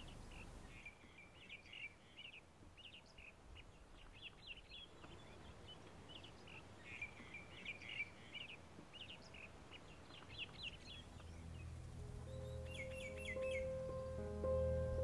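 Faint chirping of small birds, many short calls in quick succession, over a low outdoor hiss. Near the end, music with sustained notes fades in.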